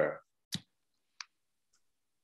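Two short clicks, the first about half a second in and a fainter one about a second in, from a presentation slide being advanced.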